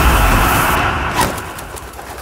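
A loud crashing hit in a dramatic soundtrack dies away, fading steadily over about two seconds.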